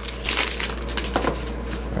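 A new magnetic 5x5 speedcube, the MoFangGe WuShuang M, being turned fast by hand, giving a rapid, continuous run of plastic clicks and clacks. The cube is fresh out of the box and not yet broken in.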